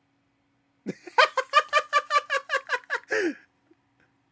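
A man laughing in a rapid, high-pitched giggle: about a dozen quick, even bursts over two seconds, ending in one longer falling breath of laughter.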